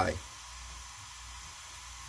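Steady faint hiss with a low hum underneath, after the tail of a spoken word.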